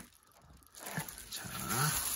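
Near silence for almost a second, then faint crinkling of bubble wrap being handled.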